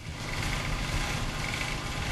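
A large engine of heavy construction machinery, most likely one of the cranes' diesel engines, running steadily under an even hiss.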